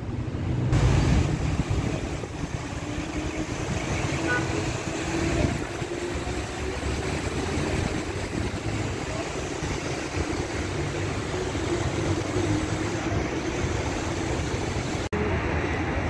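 Steady city street traffic noise: cars running past on the roads, with a brief cut-out near the end.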